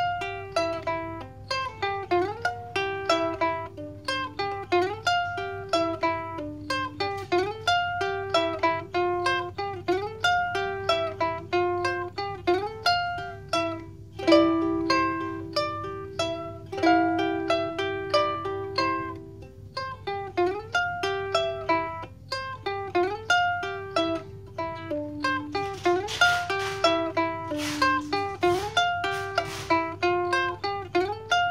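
Mahalo Kahiko ukulele fingerpicked: a continuous melody of single plucked notes over picked chord patterns. A few brighter, fuller strokes come near the end.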